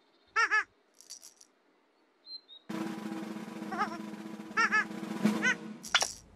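A comic character's sneeze building up: a short 'ah' call, then a drum roll and held music under repeated short 'ah' gasps. It ends in a sudden loud sneeze right at the end.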